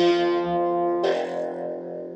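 Cigar box guitar open strings plucked: a note struck at the start and another about a second in, each left ringing and fading.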